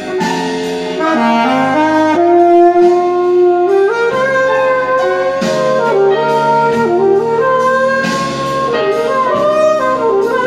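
Alto saxophone playing a blues line in E-flat over a backing track. It holds long notes and moves up and down between them, with one long held note about two seconds in.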